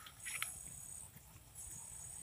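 A faint, high, thin insect buzz that comes and goes about every second and a half, each spell lasting roughly a second, with a brief faint crackle near the start.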